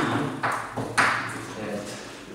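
Chalk tapping and scraping on a blackboard in a series of short, sharp strokes as words are written.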